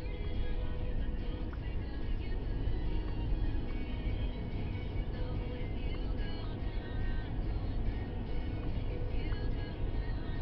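Music playing inside a moving car's cabin over a steady low rumble of engine and road noise.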